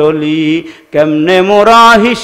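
A male preacher's voice chanting a sermon in a melodic, sung style over a microphone, holding a wavering note, breaking off briefly just before halfway, then coming back in with a long note that climbs in pitch.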